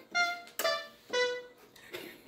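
Yamaha portable mini-key keyboard played one note at a time: three separate notes about half a second apart, each a little lower than the last, each fading quickly.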